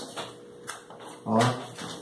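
Light taps and scrapes of playing cards and lipstick tubes being moved around and set down on a tabletop, a few scattered clicks, with a short spoken "ó" a little past a second in.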